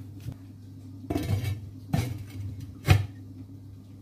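A heavy lid is put onto an enamelled cast-iron cocotte. There is some handling noise, then a light knock, then a sharp clank near three seconds in as the lid seats on the pot.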